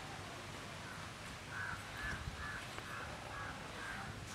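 A bird calling faintly, a run of short, evenly spaced calls at about three a second, starting about a second in.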